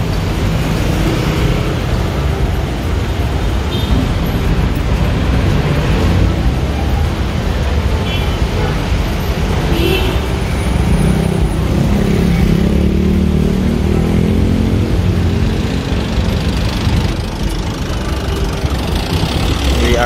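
Busy street traffic: motorcycles, motorized tricycles and cars running close by. A vehicle's engine hum grows loudest from about twelve to seventeen seconds in.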